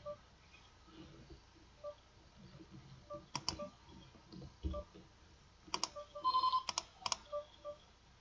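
Computer mouse clicks, several in quick pairs, as actions are clicked in an online poker client, with short soft beeps from the poker software between them. A brief ringing electronic tone comes about six seconds in, the loudest sound.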